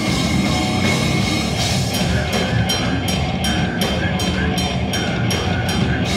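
Slamming brutal death metal band playing live: heavily distorted, low guitars, bass and drum kit, with the vocalist growling into the microphone. About two seconds in, the drums settle into a steady, even beat of about two and a half hits a second.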